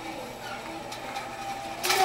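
Small mousetrap-powered car rolling across a hard tile floor, its drive string unwinding from the axle with a low, steady mechanical running sound under quiet children's murmur. Voices rise sharply at the very end.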